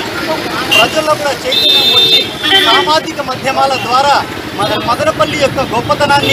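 A man speaking Telugu into a microphone over street traffic, with a vehicle horn sounding briefly about a second and a half in.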